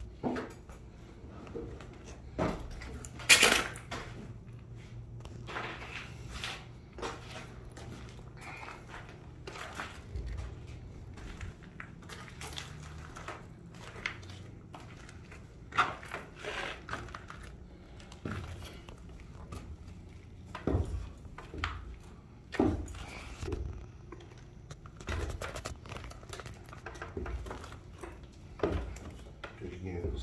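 Irregular footsteps and scuffs on a concrete floor strewn with broken rubble, with knocks from a handheld phone; the loudest knock comes about three seconds in. A low steady hum runs under the first half.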